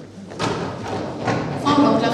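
Council members knocking on their desks in applause, a dense patter of thuds starting about half a second in and growing louder, with voices in the hall.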